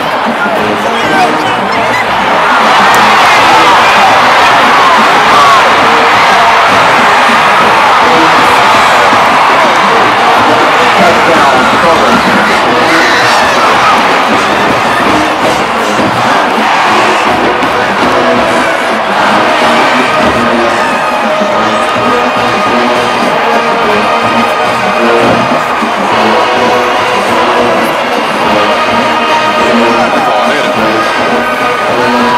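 A large stadium crowd cheering and shouting loudly over a marching band's brass section; about two-thirds of the way through the cheering eases and the horns come through playing long held chords.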